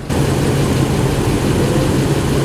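Nissan NV van's engine idling steadily, a low even hum under a loud rush of noise.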